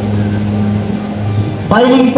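A steady low hum with hall noise, then a man's amplified voice starts suddenly near the end.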